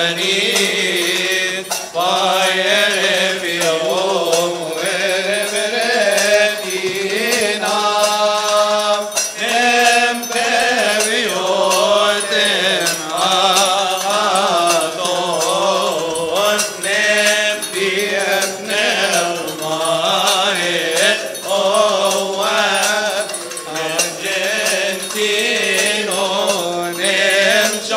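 Men's voices chanting a Coptic liturgical hymn together in long, drawn-out phrases.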